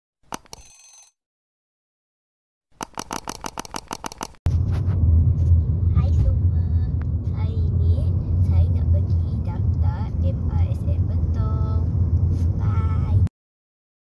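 Inside a car cabin, a loud steady low rumble of engine and road noise with a girl's voice talking faintly over it, from about four seconds in until it cuts off shortly before the end. Before that comes a short click with a ringing tail and then a quick run of about a dozen evenly spaced clicks.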